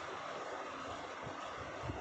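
Steady background hiss with a low rumble underneath, and two faint soft low thumps in the second half.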